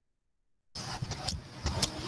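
Dead digital silence for the first three-quarters of a second, then the microphone cuts back in on steady background noise: an even hiss with a low rumble and a few faint clicks.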